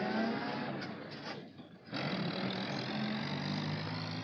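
School bus engine accelerating as the bus pulls away, with a rising whine at first. The sound drops briefly about a second and a half in, then carries on steadily.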